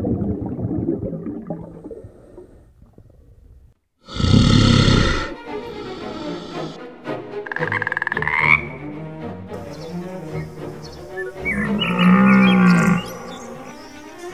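A string of separate animal calls and cries, each about a second long, after a noisy opening stretch and a brief silence about four seconds in; the calls are mixed with music.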